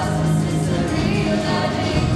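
A live pop band playing: electric and acoustic guitars, bass, drum kit, keyboard and cello together, with female voices singing.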